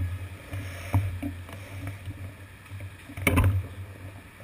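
Street noise and a steady low rumble picked up by a bicycle's seat-post-mounted GoPro, with a sharp knock about a second in and a louder clatter a little after three seconds.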